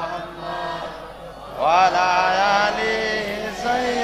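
A boy's voice chanting a devotional verse in a drawn-out, melodic sermon style. The line runs softer at first, then comes in louder about one and a half seconds in with a rising swoop into long held notes.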